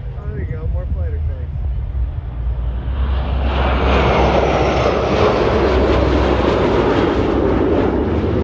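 Jet engine noise from a six-ship formation of US Air Force Thunderbirds F-16 fighters flying past. The noise swells up about three seconds in and stays loud after that.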